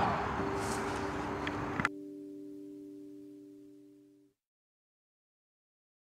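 Road traffic noise cuts off abruptly about two seconds in. Under it a held musical chord rings on alone and fades out by about four seconds.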